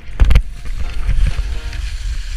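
Wind rumbling on a helmet camera's microphone and skis scraping over snow as a skier falls, with a loud thump about a quarter of a second in. Background music plays over it.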